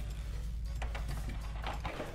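A few faint clicks and crackles from a clear plastic blister tray being handled, over a low steady hum.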